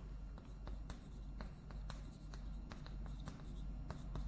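Chalk writing on a blackboard: a faint run of short, irregular taps and scratches as characters are written.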